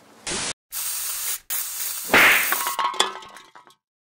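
Edited outro sound effects. Bursts of static-like hiss cut off abruptly, then a loud hit comes a little after two seconds in. Clanging metallic ringing follows and dies away near the end.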